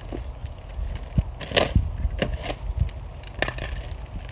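Heavy plastic bag of composted manure being torn and pulled open, crinkling in a handful of sharp crackles over a steady low rumble.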